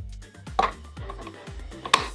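3D-printed plastic latch on a filament dry box's exit being fitted and snapped shut: a plastic knock about halfway through and a sharp click near the end, over background music.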